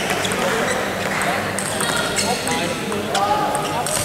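Table tennis rally: the celluloid-type ball clicking off rackets and the table in quick, uneven succession, over the murmur of voices in a large hall.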